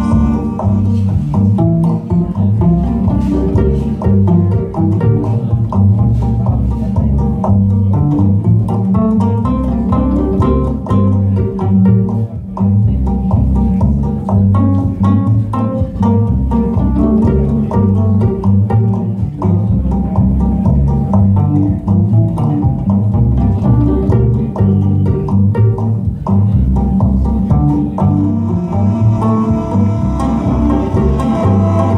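Cello and upright double bass playing an instrumental passage together, with a busy run of notes over a steady low bass line.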